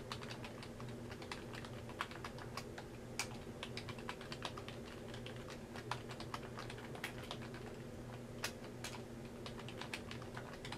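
Typing on a computer keyboard: irregular keystroke clicks, several a second, with occasional louder taps, over a steady low hum.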